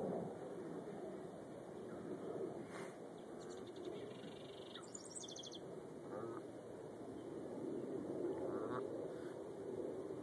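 Bird calls: a rapid, high chirping trill in the middle, then a few short, lower chirps, over steady outdoor background noise.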